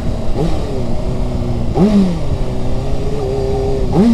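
Honda CBR600RR's inline-four, fitted with an aftermarket Shark exhaust, running steadily while the motorcycle is ridden along the road.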